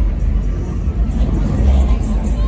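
Dodge Hellcat's supercharged V8 running with a deep low rumble that swells a little near the end.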